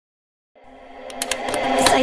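Intro sound effect of a produced beat, fading in from silence about half a second in and growing steadily louder, a held low tone under a run of quick clicks, leading into the producer tag.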